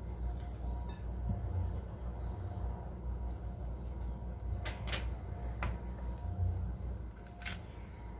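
Quiet handling noises as bananas are peeled by hand, with a few sharp clicks around the middle and one near the end, over a low steady hum.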